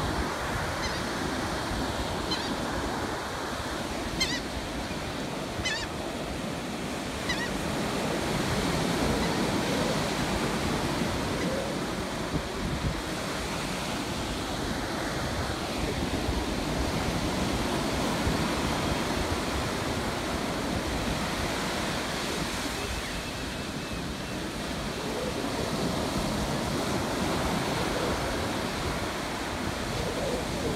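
Ocean surf breaking and washing steadily up a sandy beach, with a few short, high bird calls in the first eight seconds or so.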